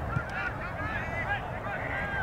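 A flock of geese honking: many short calls overlapping one another.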